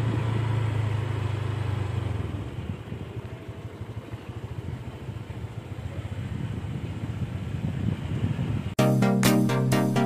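Outdoor background noise with a steady low hum for the first couple of seconds, then an uneven rushing noise. Near the end, electronic background music with a beat cuts in abruptly.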